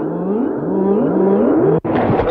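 Electroacoustic tape music: a pitched sound sweeping upward again and again, about four rising glides in a row, resembling an engine revving. It is broken by a sudden, very short dropout near the end.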